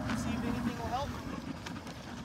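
A first-generation Toyota Tacoma pickup's engine running at low, steady revs as the truck crawls over uneven dirt, with faint voices over it.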